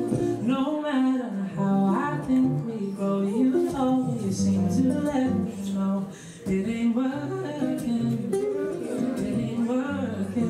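A man singing live to his own acoustic guitar accompaniment, the voice gliding through long held notes. The music thins out briefly a little past the middle, then carries on.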